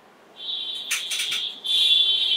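A high, steady electronic tone sounds twice: a first beep of about a second, then after a short break a second, louder beep near the end. Crackly noise runs over both.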